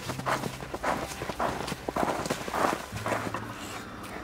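Boots crunching through snow, footsteps about two a second, dying away about three seconds in.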